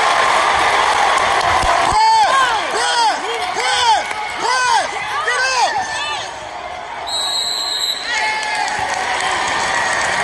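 Crowd noise in a school gym during a basketball game. About two seconds in comes a quick run of short shoe squeaks on the hardwood court, about two a second for some four seconds. Near the end a referee's whistle blows for about a second.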